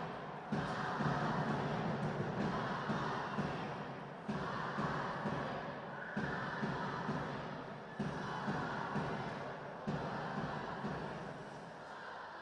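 Arena sound after a goal: music with a steady beat over crowd noise. The level jumps abruptly every couple of seconds.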